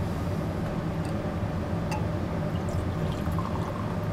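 Rum being poured from a bottle into a cut-glass tumbler, the liquid running into the glass near the end, over a steady low hum.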